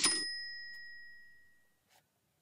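A single bright bell-like 'ding' sound effect marking a price reveal, ringing clear and fading away over about a second and a half.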